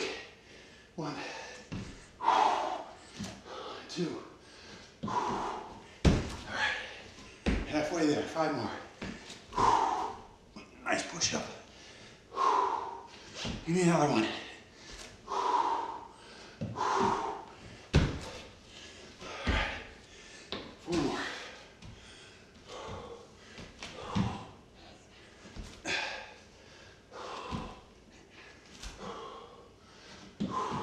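A man breathing hard from the exertion of burpees, with a forceful exhale every second or two. Now and then there is a thud of hands or feet landing on a hardwood floor.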